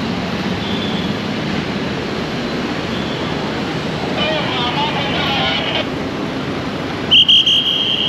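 Steady street traffic noise, with a traffic police whistle sounding a few short, loud, high blasts about seven seconds in. Voices pass by in the middle.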